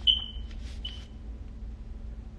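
Two short high-pitched electronic beeps: the first, right at the start, is the louder and longer; the second, about a second in, is fainter.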